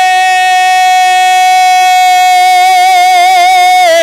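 A man's voice holds one long, high sung note of an Urdu poem in tarannum style, amplified through a stage microphone. The note stays steady, with a slight waver creeping in near the end before the pitch drops.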